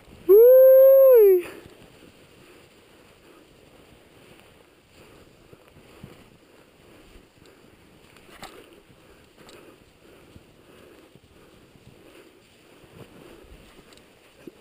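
A loud, high whooping yell from a person, about a second long, that rises, holds and drops away. After it, faint uneven hissing and scraping of skis sliding through powder snow.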